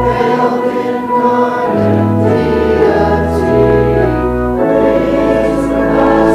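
Congregation singing a hymn to organ accompaniment, in long held chords over a steady bass line.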